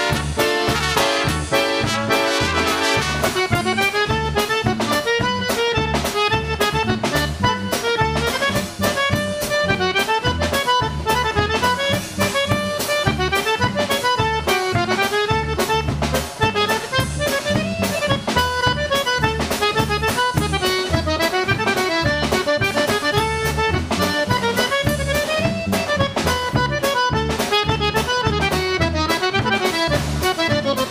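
Live polka band playing an instrumental polka. A piano accordion carries a quick running melody over a steady two-beat bass line from electric bass guitar and drum kit.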